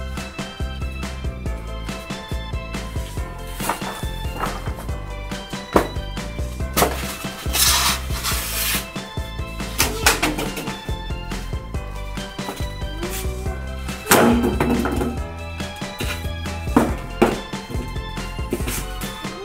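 Background music with held tones over a bass line, with a few sharp knocks and a hissing burst about eight seconds in.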